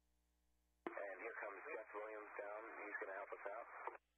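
A voice heard over a narrow-band radio link, cutting in suddenly about a second in and cutting off sharply at the end.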